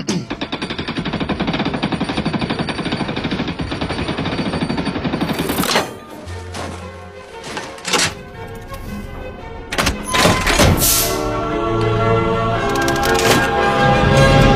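Metal gear-and-chain bridge mechanism being cranked: a fast, even ratcheting clatter for about six seconds. After that, orchestral film music with a few heavy metal clanks.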